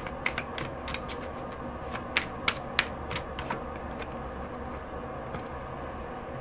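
A string of light, irregular clicks and taps, densest in the first three and a half seconds, with three sharper ones about a third of a second apart a little past two seconds in, over a steady low hum.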